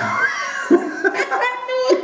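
Two men laughing.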